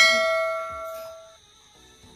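Notification-bell chime sound effect from a subscribe-button animation: a single bright ding that rings out and fades away within about a second and a half.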